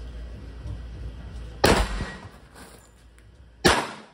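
Two shots from a .45-calibre Armscor pistol, about two seconds apart, each followed by a short echo.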